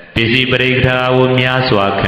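A Buddhist monk's male voice chanting in long, steady held notes, in the sing-song intonation of recited verse. It comes in just after a brief lull, breaks off briefly near the end and goes on.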